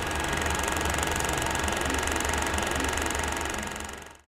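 Film-projector sound effect: a steady, rapid mechanical clatter over a low hum, fading out near the end.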